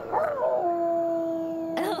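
A pitched sound wavers briefly, then settles into one long, steady held note.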